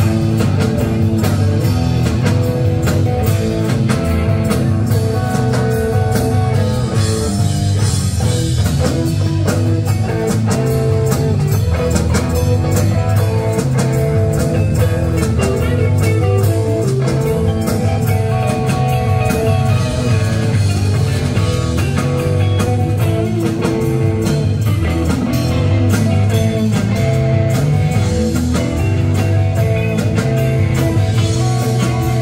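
Live blues-rock band playing an instrumental passage: electric guitars over bass guitar and drum kit, at a steady level with no singing.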